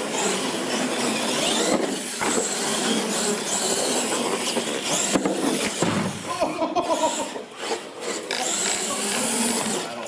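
Radio-controlled monster trucks racing flat out across a hard floor: a continuous whine of motors and gearing with tyre noise.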